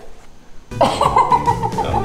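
A brief hush, then about three-quarters of a second in, background music cuts in abruptly, with a held high note that slides slowly down over a steady low backing.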